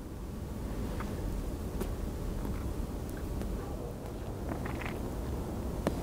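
Steady low outdoor background rumble, with a couple of faint clicks.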